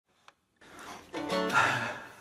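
A guitar chord sounds about a second in, then rings and fades.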